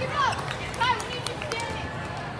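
Echoing noise of youth volleyball play in a large hall: scattered sharp knocks of balls being hit and feet on the court, under voices and short sliding shouts or squeaks, the loudest about a quarter second and just under a second in.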